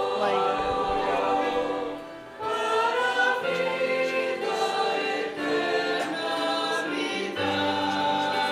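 A church praise group singing a worship song together, accompanied by violins and other instruments. The music dips briefly about two seconds in, then the voices and instruments come back in.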